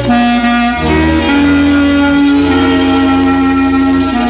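Instrumental band recording of a Hungarian medley, with a clarinet carrying the melody in long held notes that move to new pitches several times, over a steady bass accompaniment.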